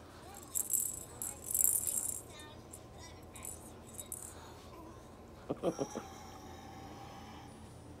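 Small plastic pet toy ball with a rattle inside, shaken and rolled, jingling in bursts during the first two seconds. A short squeak follows a little after halfway.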